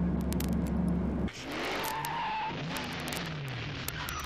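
A car engine running with a steady low hum that cuts off abruptly about a second in. It is followed by a stretch of sliding, wavering tones that rise and fall.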